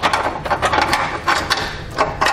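A carriage bolt and spacer block scraping and clicking against a hollow steel vehicle frame rail as they are pulled through a hole and into the rail on a fish wire.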